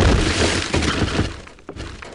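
Shattering crash sound effect: one sudden loud crash that dies away over about a second and a half, followed by a few small clatters of falling debris near the end.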